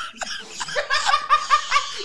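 A man laughing hard: a quick, even run of short 'ha' bursts that starts about a second in.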